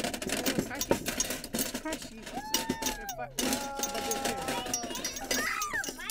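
Hand-made Foley sound effects: a run of quick clattering knocks from props for footsteps, then a drawn-out vocal 'ooh' that rises and falls in pitch before holding steady for a couple of seconds.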